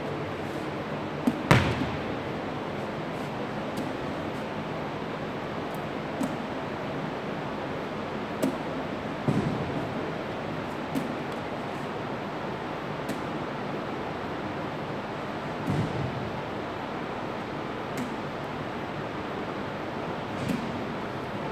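Medicine ball slapping into the hands as it is pushed up and caught in form-shooting reps: a short dull knock every couple of seconds, the loudest about a second and a half in, over a steady hiss of room noise.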